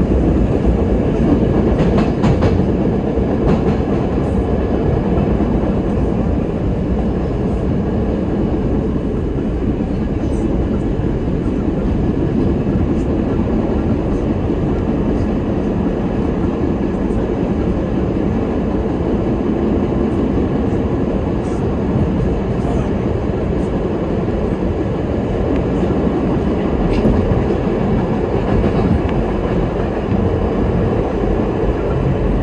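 Budd R32 subway car running at speed, heard from inside the car: a steady rumble of wheels on rail and motors, with a few sharp clicks here and there.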